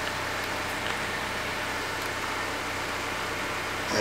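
A car engine idling steadily: a low, even hum under a hiss, with no change in pitch or level.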